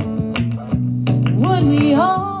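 Acoustic guitar strummed in a steady rhythm, with a sung note sliding in about halfway through.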